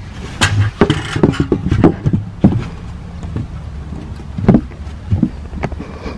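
Plywood board knocking and clattering against an aluminium folding ladder as it is set down with the ladder's hinges through its slots. There is a quick run of irregular knocks in the first couple of seconds and a few single knocks later.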